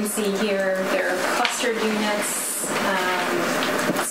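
Speech only: a woman talking steadily into a meeting-room microphone.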